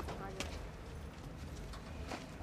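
Two sharp knocks about half a second apart, from people climbing into the back of a utility vehicle and stepping on its bed, over a low rumble and faint voices.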